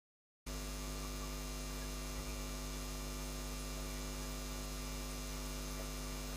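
Steady electrical mains hum with a layer of hiss, starting suddenly about half a second in. It is background noise in the recording that could not be removed.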